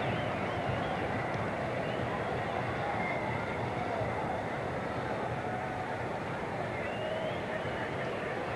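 Ballpark crowd murmuring steadily, with a few faint distant shouts rising above the hum.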